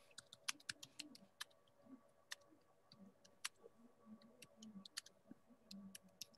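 Faint, irregular clicking of computer keyboard keys being typed on, several uneven clicks a second.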